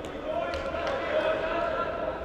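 Distant voices shouting across an indoor soccer pitch, echoing in a large hall, with two sharp thuds of the ball being struck, one at the start and one about half a second in.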